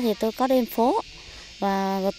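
Steady, high-pitched chirring of insects, under a woman's voice.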